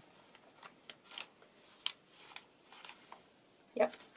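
Paper pages of a handmade junk journal rustling and flicking as they are leafed through: a handful of short, soft rustles and ticks.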